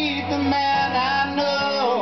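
Live acoustic music: a man singing a held vocal line over acoustic guitar, the note sliding down near the end.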